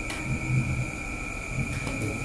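A pause in a man's speech, filled with steady background noise: a low rumble and two thin, steady high whining tones. There is a faint click near the end.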